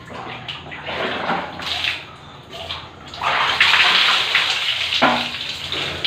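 Water splashing and pouring during a bucket bath in a small concrete bathroom, in uneven bursts. The longest and loudest pour comes about three seconds in and lasts nearly two seconds, followed by a short sharp splash.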